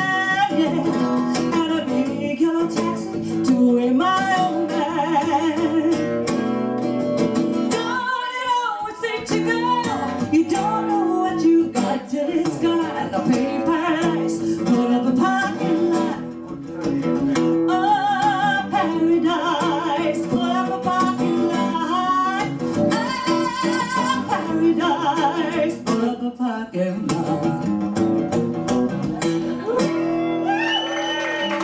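A woman singing into a microphone over a strummed acoustic guitar, a live song, with a brief break in the sound about eight seconds in.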